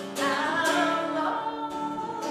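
A woman singing a folk song and accompanying herself on a strummed acoustic guitar, holding her sung notes.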